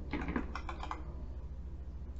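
Typing on a computer keyboard: a quick run of keystrokes in the first second, then a few scattered clicks, over a steady low hum.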